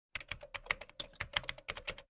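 Typing sound effect: a quick, irregular run of computer-keyboard keystroke clicks, about eight a second, that stops abruptly at the end.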